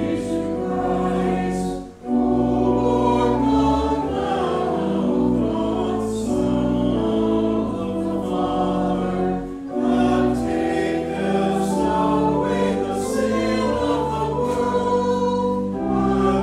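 Choir singing a sung portion of the Mass, moving in sustained phrases with brief breaks about two seconds in and again near ten seconds.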